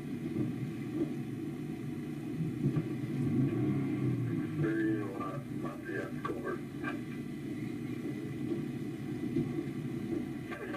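Low steady rumble inside a parked police cruiser's cabin. About five seconds in come a few seconds of muffled voice-like sound.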